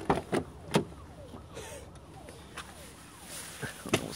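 Truck door being opened: three sharp clicks from the handle and latch in the first second, low rustling, then another sharp click near the end.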